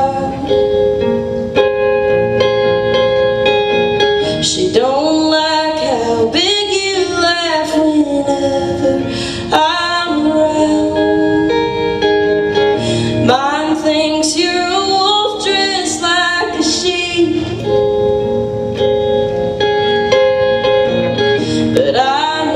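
Live solo song: a woman singing while playing an amplified electric guitar, her sung phrases gliding in pitch over held, ringing chords.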